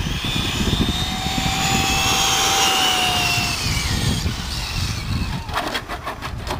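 Radio-controlled car motor running at speed, a high whine that slowly falls in pitch over a few seconds before fading.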